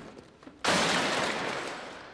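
A tabletop architectural scale model being smashed apart by hand: a sudden loud crash and clatter of breaking pieces about half a second in, dying away over the next second.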